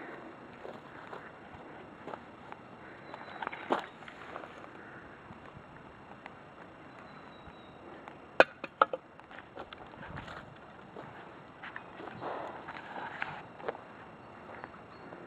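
Footsteps on a forest floor of dirt, pine needles and sticks, irregular and fairly faint. A few sharp clicks or snaps stand out: one about four seconds in and two close together around eight and a half seconds.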